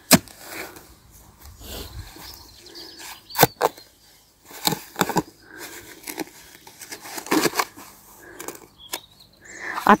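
Steel spade digging a planting hole in sandy, stony soil: a spaced series of sharp chops and scrapes as the blade is driven in, about six strikes over several seconds.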